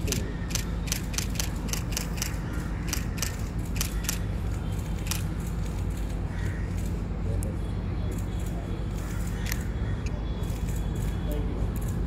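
Camera shutters clicking rapidly and irregularly from several photographers, densest in the first few seconds and thinning out later, over a steady low outdoor hum.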